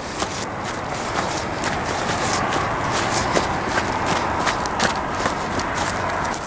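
Footsteps walking through grass and dry brush: a steady rustle with many irregular short steps and snaps.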